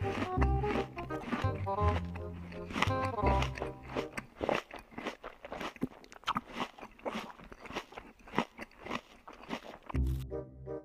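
A crunchy snack being bitten and chewed close to the microphone, in many sharp, irregular crunches. Background music with a bass line plays under it for the first few seconds, then drops away.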